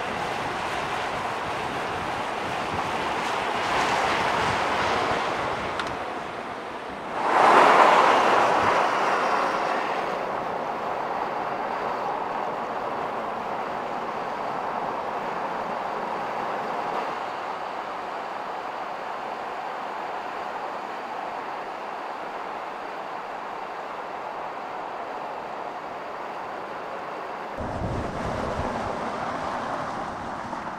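Ford Super Duty pickup truck driving on the road: a steady rush of tyre and wind noise. About seven seconds in it rises sharply to its loudest, like a pass-by, then fades over a few seconds.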